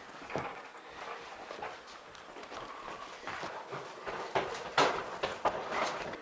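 Footsteps and clothes rustling as people walk across a hard floor: a string of uneven thumps and scuffs that grows louder after about four seconds.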